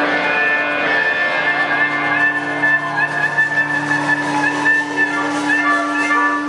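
Live band playing a song's closing section: a harmonica plays a wavering, bending line over a long held low note, with guitar and drums.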